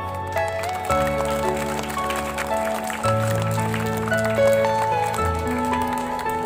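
Background music: a slow, gentle piece of long held notes over a bass line that moves to a new note every second or two.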